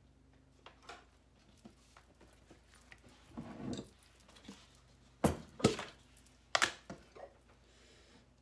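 Kitchen handling sounds: quiet rustling as tortillas are moved on the countertop, then a few sharp knocks and clinks about five to seven seconds in as a glass mixing bowl holding a spoon is brought to the counter.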